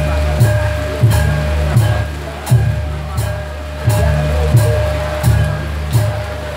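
Live Javanese gamelan music accompanying a kuda lumping dance: low, sustained metallophone tones moving in a repeating pattern under sharp percussive strokes on a steady beat about every two-thirds of a second.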